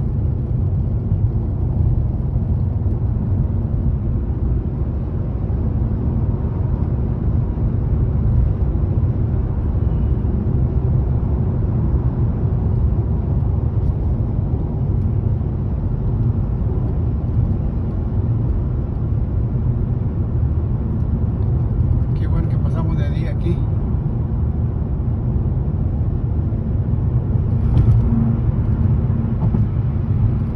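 Steady road and engine rumble heard inside a car cabin at highway speed, with a few brief higher-pitched rattles or clicks about two thirds of the way in.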